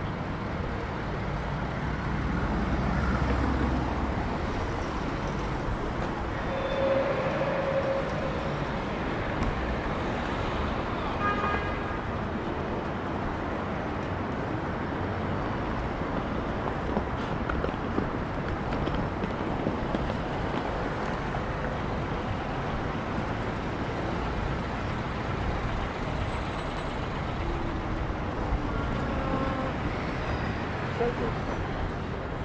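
Steady city street traffic noise: cars and vans running and passing at a busy intersection, with a low rumble a few seconds in.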